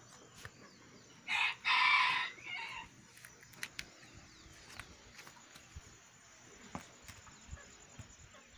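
A rooster crowing once: a single call of about a second and a half in three parts, starting about a second in. Faint scattered clicks around it.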